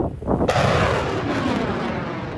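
Ship-launched missile firing from a small warship: a sudden blast of the rocket motor about half a second in, then a sustained rushing roar that slowly fades as the missile climbs away.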